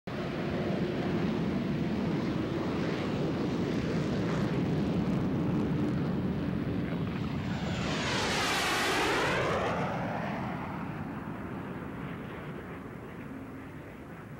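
B-52's eight jet engines running at takeoff power, a loud steady jet noise. About eight seconds in, a jet passes close overhead with a whooshing sweep, and then the noise slowly fades as the aircraft climb away.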